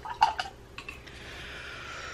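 Art supplies being handled on a tabletop: a few quick light clicks and knocks in the first half second, then a soft, steady rubbing hiss.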